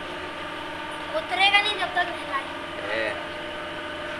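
A steady mechanical hum, like a motor running, with a short high-pitched voice about a second in and another brief one near three seconds.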